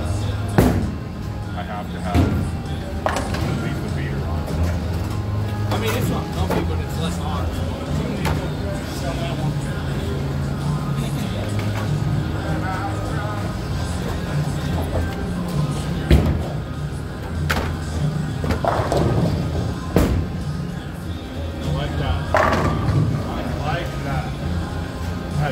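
Bowling alley din: background music and voices, with bowling balls rolling down the lanes and several sharp crashes of balls striking pins.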